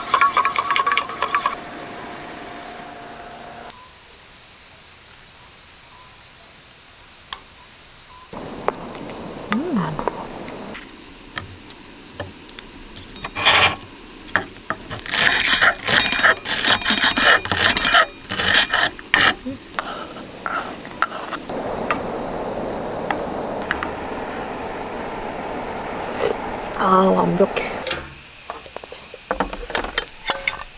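Insects chirring without a break in a steady high-pitched tone. In the middle comes a run of sharp knocks: a knife chopping a green vegetable on a wooden cutting board.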